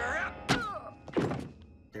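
A film-soundtrack blow of a bat striking a head: a voice, then a sharp thunk about half a second in, and a second heavy hit about a second later.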